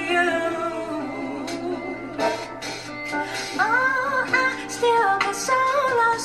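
A woman singing a slow soul ballad over quiet instrumental backing. She holds long notes with vibrato and bends the pitch upward in a vocal run about halfway through.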